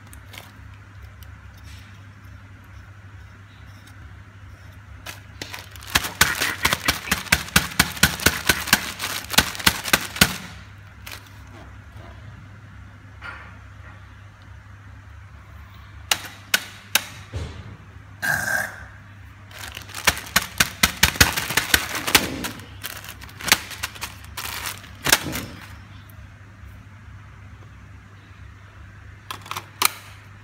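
Rapid bursts of sharp plastic-and-metal clicking and knocking from handling the display cradle and metal chassis of a Pioneer double-DIN car stereo, with the longest burst lasting about four seconds and one short squeak. A steady low hum runs underneath.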